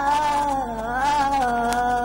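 A child's voice singing a long held note of a Mappilappattu, the pitch sagging and then rising smoothly before settling, over a steady low electrical hum.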